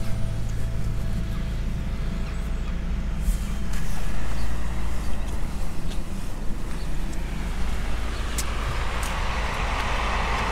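Steady low rumble of outdoor background noise, with a faint hum in the first few seconds and a few light clicks.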